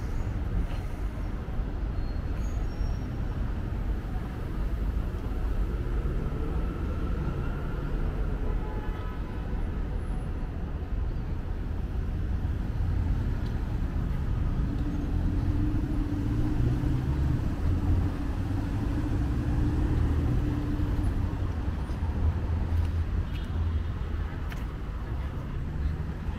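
City street traffic: cars and other vehicles running and passing, with a steady low rumble and an engine hum that grows louder past the middle and fades again.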